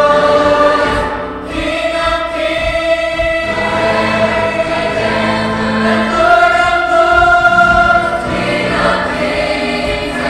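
Mixed-voice school choir singing in harmony, holding long sustained chords, with a brief dip in volume about a second and a half in.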